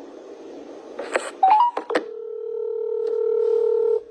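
Phone call tones: a click, a quick rising run of short beeps, then a steady tone that grows louder for about two seconds and cuts off suddenly.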